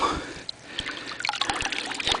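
A hand splashing in shallow creek water and lifting a glass half-pint milk bottle out, with water trickling and dripping off it in a run of small splashes and ticks.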